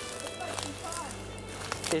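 Footsteps rustling and crackling through forest undergrowth as a person walks, a scatter of short crunches, over a low steady music bed.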